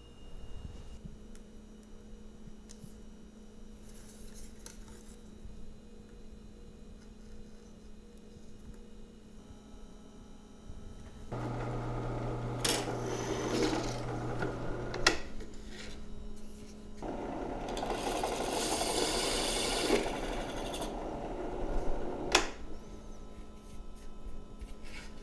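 Benchtop drill press running and cutting through a fiberglass circuit-board front panel in two bouts: a shorter pass with a fine bit about halfway in, then a longer, louder pass with a larger bit. Before that there are only small handling sounds.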